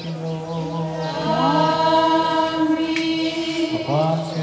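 Orthodox liturgical chant: a low note is held steadily underneath while a voice glides up about a second in and holds a long note above it.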